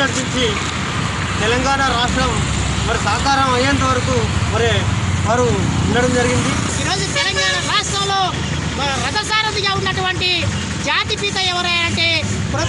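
A man speaking continuously over a steady low rumble.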